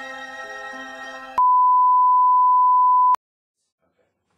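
Background music with held chords over a repeating low note, cut off about a third of the way in by a loud, steady electronic beep of a single pitch. The beep lasts a little under two seconds and stops abruptly.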